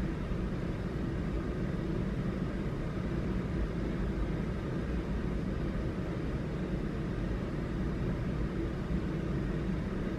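Steady low rumble with no distinct events, unchanged throughout.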